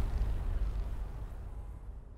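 A low engine rumble fading out steadily.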